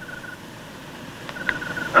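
Cricket chirping: short, evenly pulsed high trills about a second and a half apart, one at the start and one about one and a half seconds in, over a soft steady hiss.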